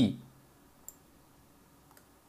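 A single sharp computer mouse click about a second in, with a fainter click near the end, over quiet room tone; the last spoken word trails off at the very start.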